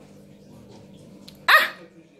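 A man's short, loud exclamation, "Ah!", about one and a half seconds in, over a faint steady hum.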